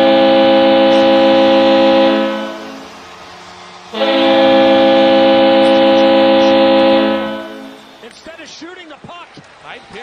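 Washington Capitals' hockey goal horn, a clean manufacturer's recording, sounding two long, steady blasts: the first fades out a couple of seconds in, the second starts about a second and a half later, holds about three seconds and fades out. A man's voice comes in near the end.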